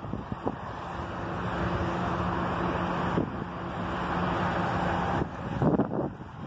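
A vehicle engine holds a steady low hum for a few seconds over traffic noise, with wind on the microphone.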